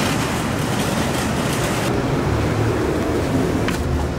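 Shopping cart wheels rolling over a tiled floor: a steady, noisy rumble that shifts in tone about two seconds in.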